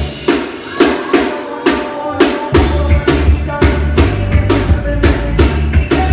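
Live reggae band playing an instrumental passage: drum kit keeping an even beat with sharp snare hits about twice a second, over guitar. The bass drops out for the first two and a half seconds and then comes back in.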